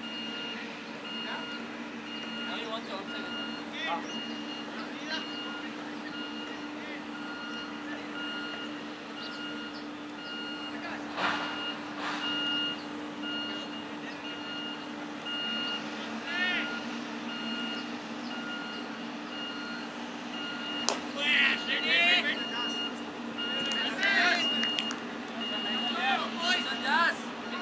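Open-air cricket ground: a steady low hum under a repeating electronic beep, with a sharp knock about eleven seconds in and another about twenty-one seconds in. Players' shouted voices follow near the end.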